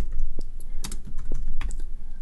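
Typing on a computer keyboard: a quick run of irregularly spaced keystrokes.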